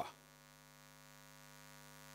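Near silence with a faint, steady electrical mains hum from the microphone and sound system.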